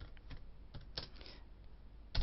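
Faint clicks from a computer keyboard: a few scattered keystrokes, with a small cluster about a second in, as a file name is entered and saved.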